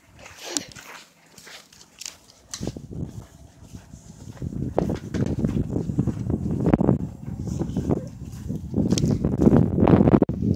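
Wind buffeting a phone microphone while walking on grass: a few light clicks at first, then from about two and a half seconds in a loud, irregular rumble with uneven surges.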